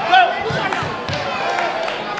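Spectators' voices in a large, echoing gym, with a few short thumps spaced through it.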